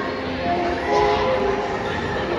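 Echoing gymnasium ambience: indistinct voices of players and spectators over a steady background hum of the hall.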